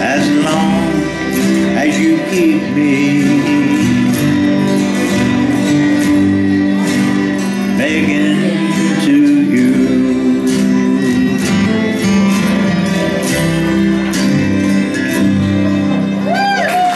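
Several acoustic guitars strumming a country song in steady time, with a man singing and a woman joining in for a line about eight seconds in.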